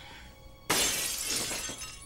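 A sudden loud crash about two-thirds of a second in, dying away over about a second, over faint background music.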